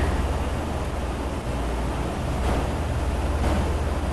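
A steady low rumble under an even hiss, without change or distinct events.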